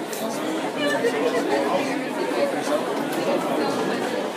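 Indistinct chatter of many people talking at once in a large indoor hall, at a steady level with no single voice standing out.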